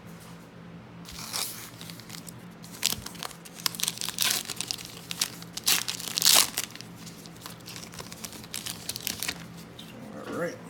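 Upper Deck hockey card pack wrapper being torn open and crinkled by hand: irregular crackling and ripping, loudest about six seconds in.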